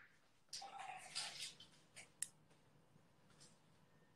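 Near silence, broken by faint muffled sounds in the first second and a half and two brief soft clicks about two seconds in.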